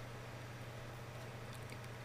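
Quiet room tone: a faint steady low hum with light hiss, no distinct events.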